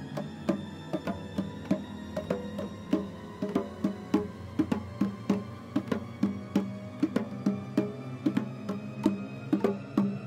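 Music made of a quick, steady rhythm of hand-drum strikes over a low sustained tone.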